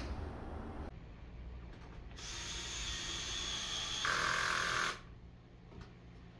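Cordless drill-driver motor running with a steady whine for about three seconds, louder for the last second before it stops suddenly.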